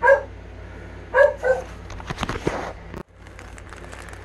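A dog barking in short, sharp barks: once at the start and twice more about a second in. After that comes a second of crackly rustling, as of plastic packaging being handled.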